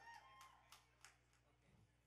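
Near silence: a faint high tone fades out in the first half second, followed by a few faint clicks.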